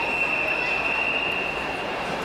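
A single long, steady high-pitched whistle blast lasting about two seconds, over the echoing hubbub of a crowd in an indoor pool hall.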